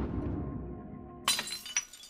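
A wine glass shattering on a hard floor about a second in: a sudden sharp crash, followed by shards tinkling and skittering.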